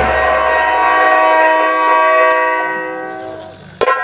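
Harmonium holding a steady chord that fades out about three and a half seconds in, then a sharp drum stroke near the end.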